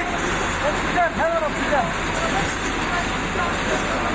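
Men shouting short, urgent calls to one another over a steady rushing background noise, the commotion of a hurried rescue in a street.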